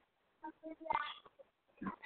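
A few faint, short voice sounds, a low murmur between sentences, heard over a narrow, telephone-like line. They come about half a second to a second and a half in, with another just before the end.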